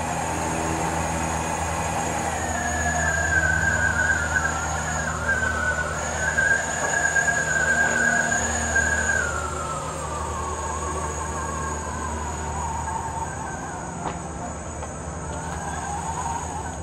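Battery-electric remote-controlled helicopter tug driving slowly with a helicopter loaded on it. Its drive motors give a steady low hum and a thin high whine, with a wavering higher whine that rises about two seconds in, holds, then sinks after about nine seconds as the tug slows.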